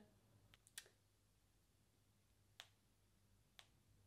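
Near silence broken by four faint, sharp clicks, spaced irregularly: long acrylic fingernails tapping on a phone's touchscreen.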